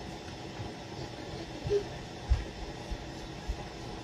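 Steady low kitchen room hum, with three soft low thumps in the second half, about half a second apart.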